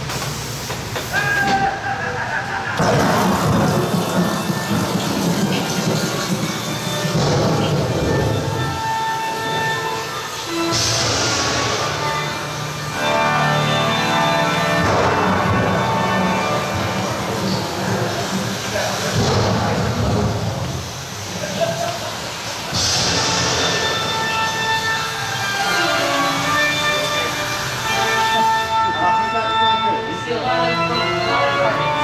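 Dark-ride onboard soundtrack: orchestral music that follows the ride car, with sound effects layered over it, playing loud and continuously.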